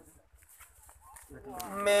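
A brief pause, then about a second and a half in a man starts singing, opening on a long held low note: the first word of an unaccompanied naat.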